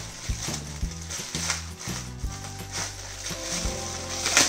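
Clear plastic packaging of a paintbrush set crinkling and rustling in a child's hands as he works it open, with a few sharper clicks scattered through.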